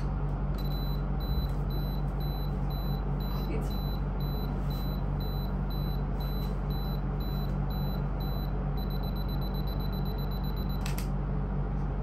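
Camera self-timer counting down: a high beep about twice a second, speeding up to rapid beeps for the last two seconds, then the shutter clicks. A steady low hum runs underneath.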